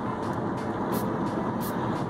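Road and engine noise inside a moving car's cabin: a steady low rumble, with a faint high tick repeating about every two-thirds of a second from about a second in.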